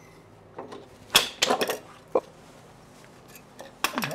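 Clicks, knocks and short scrapes from handling a wooden-backed hand comb with steel tines against a wooden bench while flax fibres are combed. The sharpest knocks fall about a second in and just before the end.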